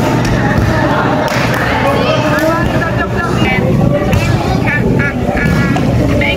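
Players and onlookers shouting and calling over one another during a volleyball rally, with a sharp hit of the ball at the net right at the start.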